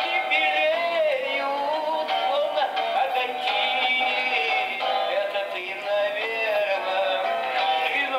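A recorded chanson song playing, a sung vocal line gliding over a steady backing, with a thin sound that has no bass and no high end.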